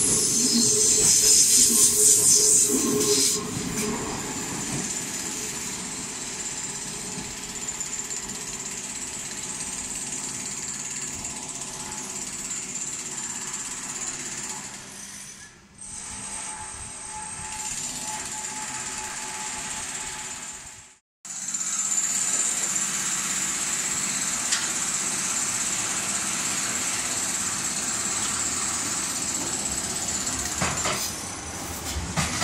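The last cars of an electric commuter train rolling past the platform for about the first three seconds. Then steady noise from the station's construction site with machinery running, broken by a short dropout about two-thirds of the way through, after which the steady noise continues a little louder.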